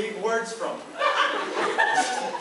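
Voices speaking, with chuckling laughter.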